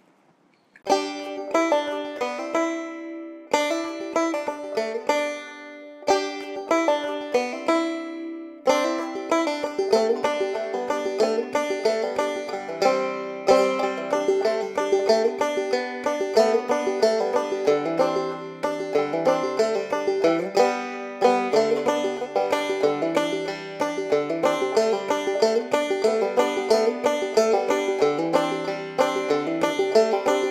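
Background instrumental music played on plucked strings, with a banjo-like picked sound. Sparse picked notes start about a second in and pause briefly, then a fuller, busier tune with a bass line comes in from about nine seconds.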